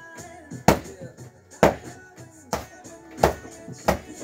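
Fists striking a stuffed punching bag five times, sharp hits a little under a second apart, over background music.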